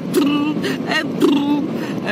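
A woman humming a few held notes of a tune, heard inside a moving car's cabin over its steady road and engine noise.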